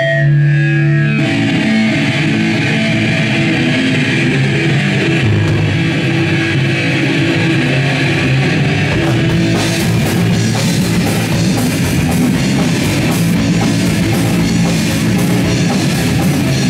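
A punk rock band playing live without vocals: distorted electric guitar through a Marshall amp, bass guitar and drum kit. The cymbals come in harder from about ten seconds in.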